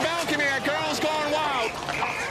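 Dense crowd of many voices shouting and yelling over one another.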